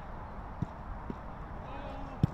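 A football being kicked on grass: two dull thuds about half a second apart, with faint shouting from players.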